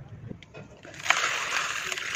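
Crumbled dry soil pouring in a stream into a basin of muddy water, a steady hissing splash that starts suddenly about a second in.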